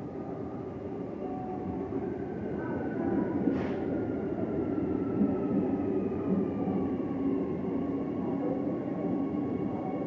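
Electric train approaching along the track, its rumble growing louder, with faint high whines sliding slowly down in pitch.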